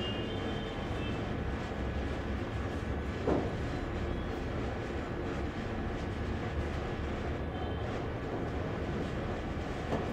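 Steady low rumble of background room noise, with one short gliding sound about three seconds in.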